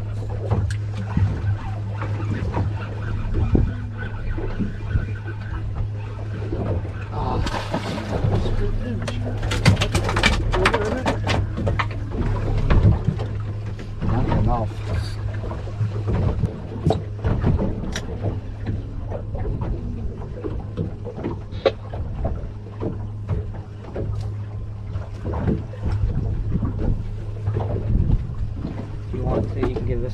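Sea water lapping and slapping against the hull of an offshore center-console fishing boat, with a steady low hum throughout and scattered short knocks and clicks, thickest a few seconds in.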